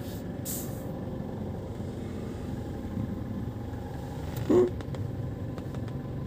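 Steady low rumble of a car's cabin while driving. About half a second in there is a short hiss, and at about four and a half seconds a single short, pitched vocal sound.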